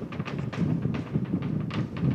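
Distant rumble and crackle of Starship's Super Heavy booster, its 33 Raptor engines heard from miles away. Scattered sharp pops sound over a low rumble.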